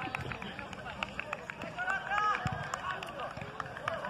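Faint, distant voices talking outdoors, with scattered light clicks.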